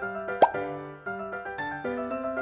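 Bouncy keyboard background music, with one short upward-gliding plop sound effect about half a second in.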